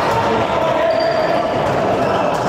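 Indoor handball game play: the ball bouncing on the court and players moving, with voices carrying in the echoing sports hall.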